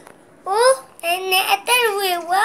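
A toddler's high-pitched, sing-song vocalising: several drawn-out syllables with rising and falling pitch, starting about half a second in.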